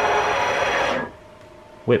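A CNC axis's long ball screw spun by its drive motor at high rapid speed: a loud, steady whine of many tones over mechanical noise that cuts off suddenly about a second in, leaving a faint steady hum. At this speed the screw is whipping, because it is too long for it.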